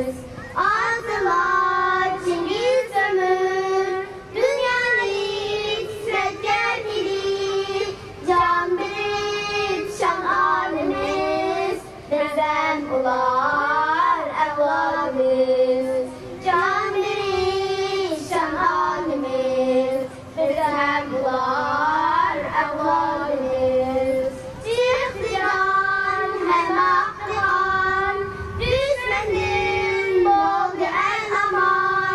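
Young girls singing a song together into handheld microphones, their voices in unison. The song moves in sustained phrases with short breaks between them.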